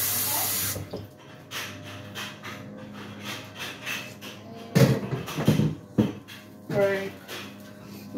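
A brief rush of water, about a second long at the start, as water is added to a pot of soup. After it a low steady hum carries on in the background.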